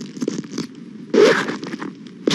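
Quick scratching and scraping strokes on the road surface, with one louder rasping scrape a little past a second in.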